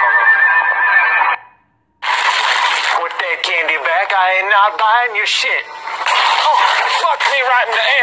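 Voice-filled audio cuts off sharply about a second and a half in, followed by a brief silence. Then a man calls out loudly, his voice swooping up and down in pitch in a wailing, sing-song way, with noisy, busy sound around it.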